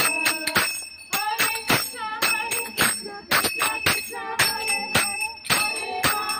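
Small brass hand cymbals (kartals) struck in a steady rhythm, their metallic ringing carrying between strokes, under a group of women singing a devotional chant.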